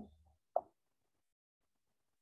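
A single soft plop of an on-screen touch keyboard key being tapped, about half a second in, as the letter q is entered.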